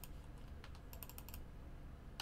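Typing on a computer keyboard: a single keystroke, then a quick run of about five keystrokes around the middle, faint over a low steady room hum.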